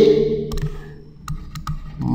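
A few faint, separate clicks, a stylus or pen tapping on a writing tablet as numbers are handwritten, after the last word of a man's speech fades.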